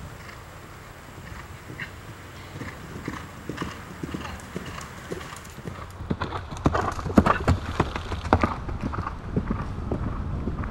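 Hoofbeats of a horse galloping on turf, in a steady rhythm that grows louder, the heaviest strikes coming about six to nine seconds in.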